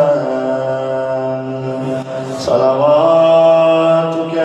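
A man's voice chanting a melodic devotional recitation, holding long notes with slow pitch glides. About two seconds in the line breaks off briefly, then a new phrase rises and holds steady.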